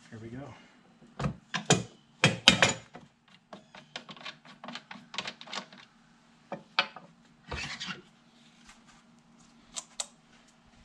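Knocks, clicks and scrapes of parts being handled as the belt-sanding assembly is worked loose from a Ridgid oscillating belt/spindle sander. The sander is switched off. The loudest knocks come between about one and three seconds in, and there is a rasping scrape near the end, over a faint steady hum.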